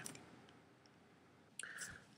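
Near silence: the last word fades out, then quiet room tone, with one brief faint sound shortly before the end.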